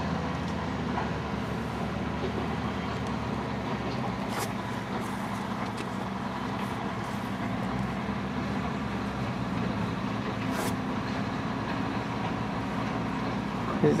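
Motorcycle engine idling steadily, a low even hum with no change in speed, and a couple of faint clicks.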